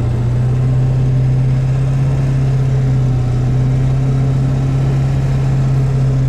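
Pickup truck driving at a steady cruising speed, heard inside the cab: a loud, constant low engine drone over road and wind noise, with no change in revs.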